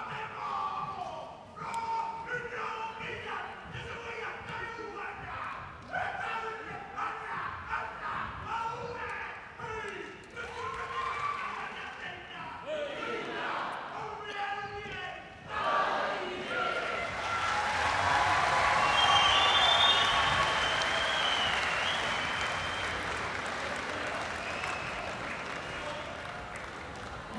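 A man calling out loudly in a chant, with a few sharp thumps. About sixteen seconds in, a crowd breaks into applause and cheering with whistles; it swells for a few seconds and then slowly dies away.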